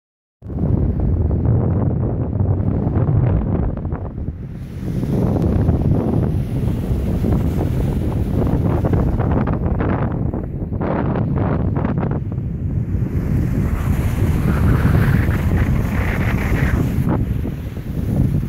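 Strong wind buffeting the microphone, mixed with ocean surf breaking and washing onto a sandy beach. A few sharper gusts come through about two thirds of the way in.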